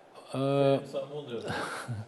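A man speaking in a TV studio: a short spoken phrase, then a breathy sound like a quick intake of breath.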